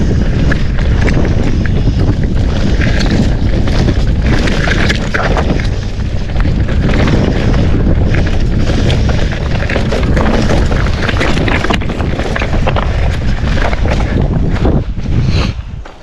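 Wind buffeting the camera microphone as a mountain bike rolls down rock slabs and dirt, with tyre rumble and frequent rattling knocks from the bike over the rough ground. The noise drops away near the end as the bike slows.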